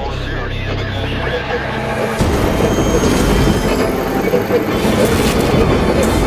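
Film trailer soundtrack: a low sustained drone, then about two seconds in a loud, dense rumble cuts in and keeps building.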